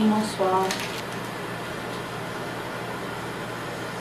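Steady hiss and low hum of a ventilation fan in a small restroom. A woman's voice is heard briefly at the very start.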